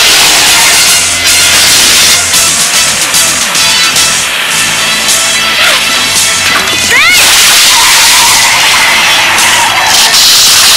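Cartoon action soundtrack: background music mixed with vehicle engine, skidding and crashing sound effects, with a short swooping tone about seven seconds in.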